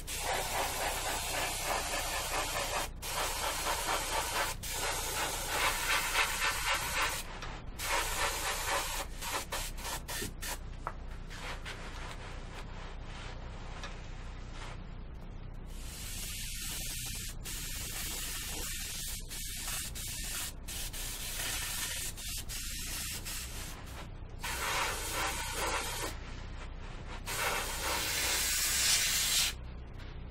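Suction-fed airbrush spraying spirit stain: a hiss that comes in bursts of a few seconds as the trigger is pressed and released, with short quieter gaps between.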